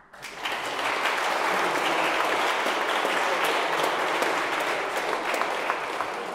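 Audience applauding: a dense, steady clatter of many hands clapping that starts suddenly just after the start.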